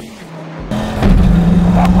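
Dodge Viper's V10 engine pulling hard under acceleration, heard from inside the cabin. A quiet half second, then a loud steady drone comes in and is at full strength about a second in.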